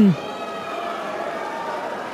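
Steady hubbub of a crowd of spectators in a sports hall, with a few faint long-held voices rising above it.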